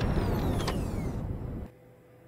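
Sci-fi energy-blast sound effect for a robot's weapon: a dense noisy burst with several falling whistling tones that fades over about a second and a half, then cuts off suddenly.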